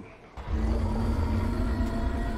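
A deep, steady rumble with a low drone held under it, starting about half a second in, from the episode's soundtrack.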